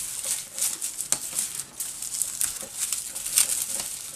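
Fingers picking and rubbing dry, papery skin and dead leaf material off amaryllis bulbs in a pot of loose potting soil: irregular crinkling rustles with a few small clicks.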